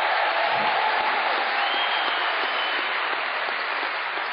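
Auditorium audience applauding steadily.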